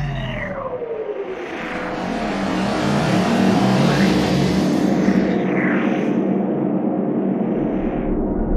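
Logo intro sound effects: a tone falling in pitch near the start, then a long whooshing swell over a steady low rumble.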